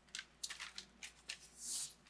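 Faint crunching of hard almond-flour crackers being chewed, a few short sharp cracks, with a brief crinkle of the plastic snack bag near the end.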